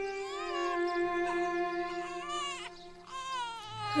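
An infant whimpering and crying in short wavering wails, several times, over held background-music chords.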